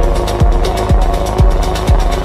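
Minimal techno: a steady four-on-the-floor kick drum, about two beats a second, each kick dropping in pitch, with ticking hi-hats between the beats over a low bass line and held synth notes.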